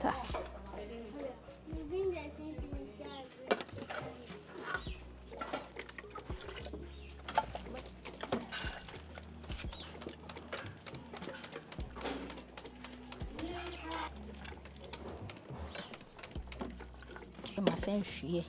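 Dried clams being rinsed in hot water in an aluminium colander over a plastic basin, to wash out the sand: scattered clinks and knocks of the metal colander and shells, with water draining and splashing. Faint voices in the background.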